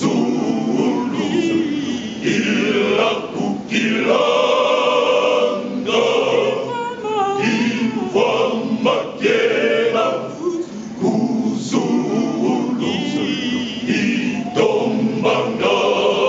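A men's choir singing, several voices together in sustained phrases a few seconds long.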